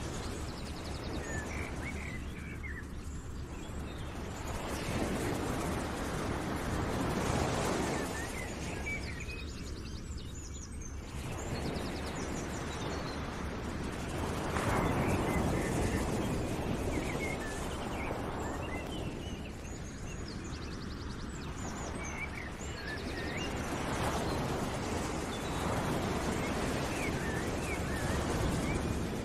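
Outdoor ambience: a rushing noise that swells and fades every few seconds, with small birds chirping over it.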